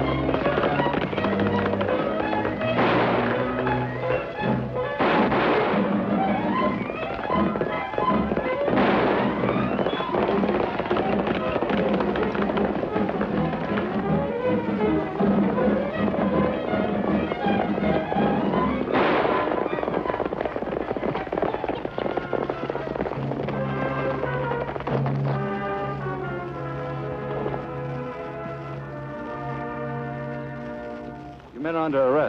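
Dramatic Western chase music with four gunshots ringing out, at about 3, 5, 9 and 19 seconds in. Near the end the music settles into held notes.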